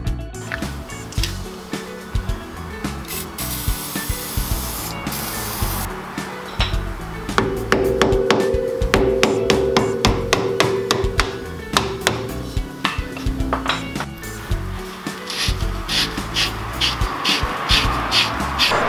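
An aerosol can of penetrating spray hisses for a couple of seconds about three seconds in. Then comes a run of sharp, irregular hammer knocks on the coilover's locking collar, muffled by a rag, over background music.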